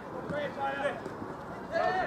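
Players' voices calling out across a five-a-side football pitch, two short shouts about half a second in and near the end, with scattered thuds of running feet and ball.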